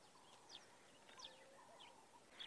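Near silence with a few faint bird chirps: about three short calls that slide down in pitch.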